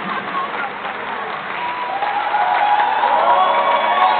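Audience applauding; about halfway through, several sustained held notes come in over the clapping and the whole grows louder.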